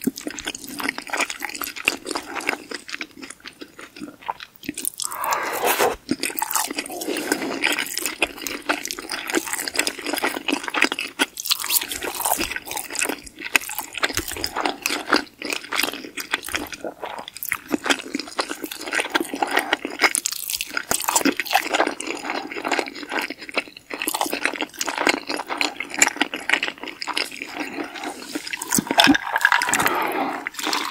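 Close-miked binaural eating sounds: chewing pesto pasta, with wet, sticky mouth sounds and a steady stream of small clicks throughout.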